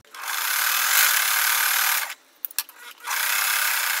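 Sewing machine running, stitching fabric pieces together in two runs: about two seconds, a short stop with a few light clicks, then about another second.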